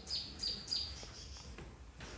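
A bird chirping faintly: a quick run of short, high chirps, each dropping in pitch, in the first second, then only faint background.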